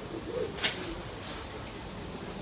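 A faint low coo, typical of a pigeon or dove, a little under half a second in, then a brief hiss about two-thirds of a second in, over quiet outdoor background.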